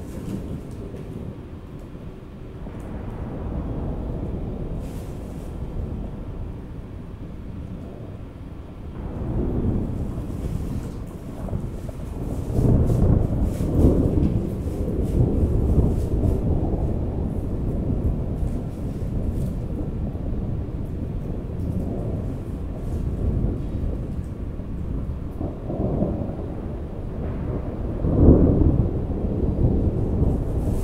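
Deep rolling rumbles like thunder, swelling and fading several times, strongest around the middle and again near the end.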